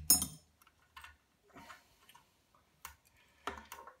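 Light metallic clicks and clinks of small pliers and a freed volume potentiometer being handled inside an open amplifier chassis: one sharp clink with a brief high ring just after the start, then a few scattered light clicks.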